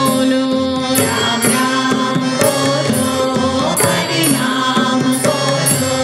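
Hindu devotional bhajan performed live: a woman sings the lead, with harmonium and the beat kept on tabla and dholak.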